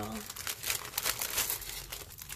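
Clear cellophane packaging crinkling and crackling irregularly as it is handled.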